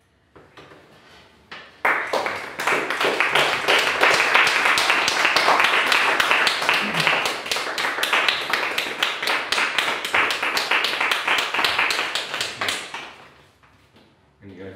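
Audience applauding, a dense patter of many hands that starts suddenly about two seconds in and dies away near the end.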